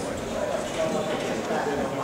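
Voices calling out in a sports hall during an amateur boxing bout, with short quick knocks from the boxers' footwork and gloves on the ring.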